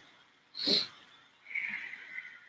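A woman sniffing sharply through her nose, short 'bunny nose' sniffs about a second apart, with one clear sniff under a second in. A fainter, longer breathy sound follows about a second and a half in.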